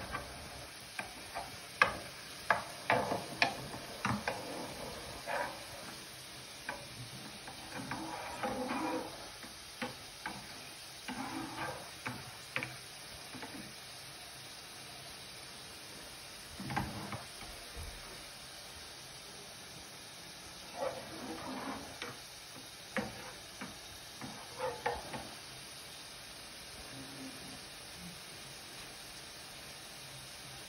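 Wooden spoon stirring butter and oil melting in a frying pan: sharp taps and scrapes of the spoon on the pan, thickest in the first few seconds and then occasional, over a faint steady sizzle.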